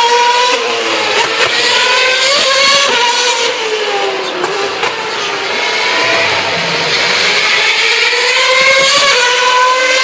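2011 Formula One cars' 2.4-litre V8 engines running at high revs as they pass, the pitch climbing through each gear and dropping back at every upshift. The note falls away through the middle, then climbs through the gears again in the second half.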